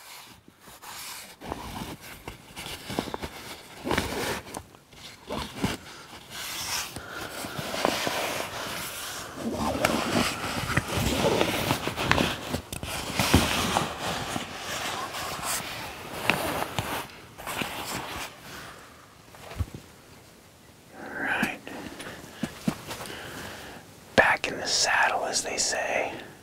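Close whispering with rustling and handling of clothing and gear, coming and going in irregular bursts.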